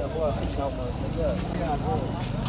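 A car engine running at a steady idle, with voices over it.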